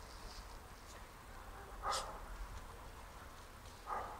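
Central Asian Shepherd (alabai) puppies, ten weeks old, giving two short, faint yips about two seconds apart, the first about halfway through and the second near the end.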